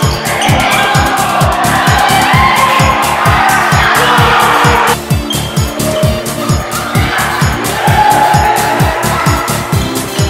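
Electronic dance music with a steady, driving kick drum and a loud noisy synth layer that cuts off sharply about five seconds in and swells back afterwards.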